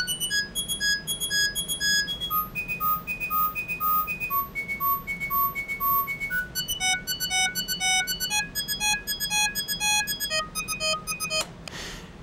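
MDA DX10 software FM synthesizer playing a repeating run of short, high-pitched notes, about two or three a second, the pitch stepping to a new note every few notes. The notes stop shortly before the end.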